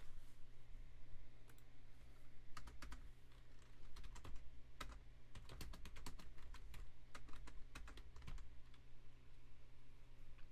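Typing on a computer keyboard: several short runs of keystrokes, over a steady low hum.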